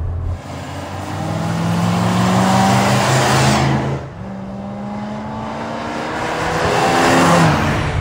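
V8 engine of a 1989 Dodge Dakota Shelby pickup accelerating as the truck drives past, heard in two passes split by an abrupt cut about four seconds in. Each pass swells in loudness and pitch as the truck approaches, and the engine note drops as it goes by near the end.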